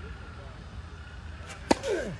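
A tennis ball struck hard by a racket near the end, one sharp crack, followed at once by a short grunt from the player that falls in pitch.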